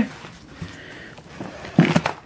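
Faint handling of paper mail inside a cardboard shipping box, then a short, louder burst of sound near the end.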